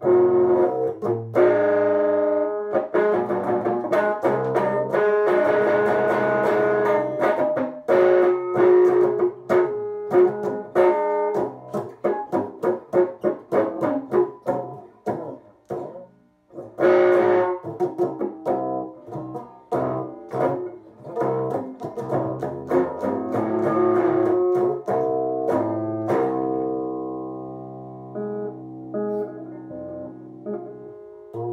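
Electric guitar played as rhythm guitar: fast, rhythmic picked and strummed chords. About sixteen seconds in the playing stops briefly, then comes back with a loud chord. Near the end it eases into quieter, held notes.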